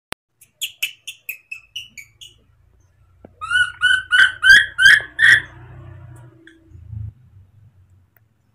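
Baby macaque calling loudly for its keeper with high, piping calls. First comes a run of about eight short cheeps that grow fainter. After a pause comes a louder run of six calls, each rising and falling in pitch.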